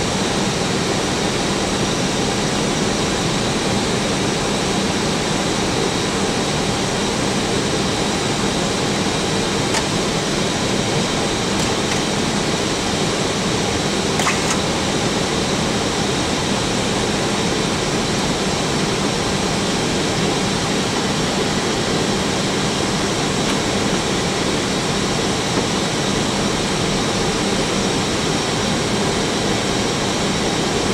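Steady flight-deck noise of a jet airliner in flight: an even rush of air with a low hum underneath, and a faint click about fourteen seconds in.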